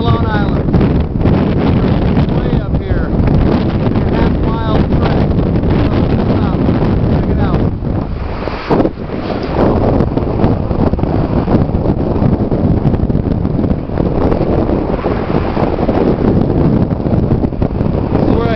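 Strong wind buffeting the microphone, a loud rumbling rush throughout with a brief lull a little before the middle.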